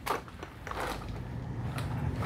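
Gloved hands handling a thin costume-jewelry chain, with faint rustling and a few small clicks.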